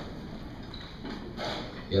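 Low murmur of voices in a large hall, with a few light knocks and rustles of handling.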